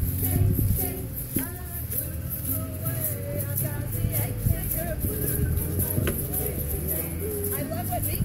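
Live blues song on acoustic guitar with a woman's voice, accompanied by egg shakers shaken in a steady rhythm.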